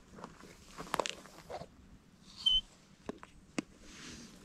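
Footsteps and rustling on dry twigs and brush as a person shifts about and kneels down, with a few sharp clicks. A single short high chirp about halfway through is the loudest sound.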